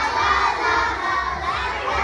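A children's choir singing loudly together, many voices at once and close to shouting.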